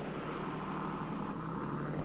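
Steady low drone with an even hiss over it, the sound of a ship's engines running at sea.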